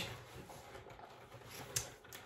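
Faint handling of a large paper wall calendar as a page is turned and lifted, with one short crisp paper rustle near the end.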